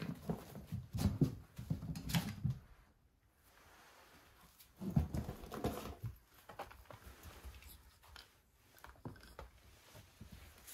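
Dry straw and a shredded woven straw mat rustling and crackling as pet rabbits move about in it, with a louder burst at the start and another about five seconds in, then lighter scattered clicks.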